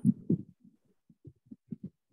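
A run of short, muffled low thumps, several a second at uneven spacing, coming over a video call's audio.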